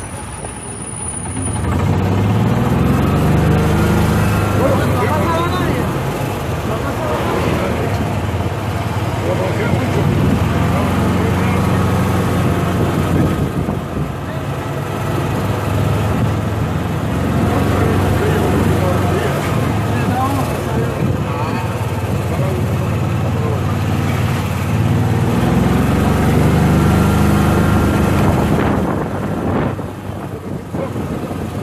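City bus engine heard from inside the cabin, its pitch rising and falling several times as the bus gathers speed through traffic, with voices chattering in the background.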